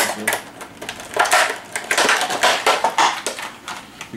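Cardboard box and plastic packaging being handled and pulled open: irregular crinkling and rustling that comes in a run of bursts.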